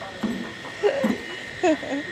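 A few short, scattered vocal sounds from people nearby, each lasting a fraction of a second, over a faint steady high tone.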